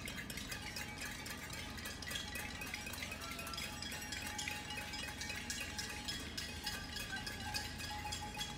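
Irregular high tinkling of chimes, many short ringing notes overlapping without a steady beat.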